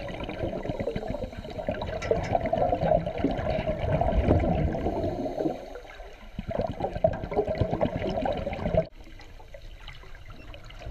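Recorded underwater: crackling, bubbling water noise from scuba divers' exhaled bubbles. It drops suddenly to a quieter hiss about a second before the end.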